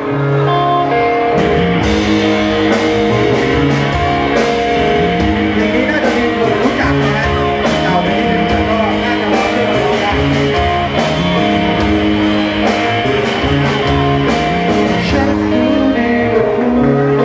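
Live rock band music led by guitar, with a steady beat.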